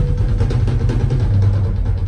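Live drum solo on a rock drum kit (Natal): a fast, continuous run of strokes, heavy in the toms and bass drum.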